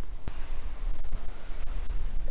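Wind buffeting the microphone with a low rumble, over the steady rush of waves washing in at the water's edge; the sound starts abruptly about a quarter second in.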